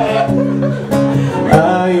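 Cutaway acoustic guitar strummed in a few strokes, its chords ringing on between them; a man starts singing right at the end.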